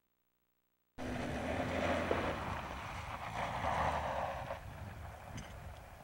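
Silence, then about a second in a rally car on a gravel stage cuts in abruptly: engine running hard with the rush of tyres on loose gravel, loudest at first and dropping off after about four seconds as the car pulls away up the hill.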